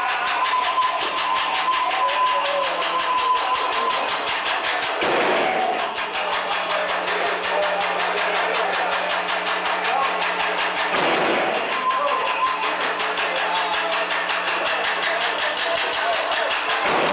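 A live band playing loud, dense experimental rock: a fast, even pulse runs under a held high tone and a low drone, with a downward swooping sound about every six seconds.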